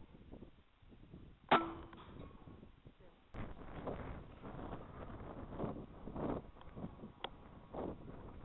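A single sharp rifle shot about a second and a half in, with a brief metallic ring after it. Later comes rough, windy rustling with handling knocks, and another short sharp click near the end.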